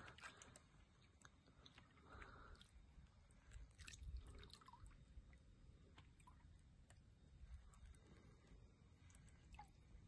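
Near silence with faint, scattered drips and small wet splashes of water from a carp in a landing net, slightly louder about four seconds in, over a low rumble.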